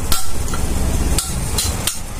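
A few sharp metal-on-metal hammer strikes on a motorcycle crankshaft assembly, each with a brief metallic ring, over a steady low rumble.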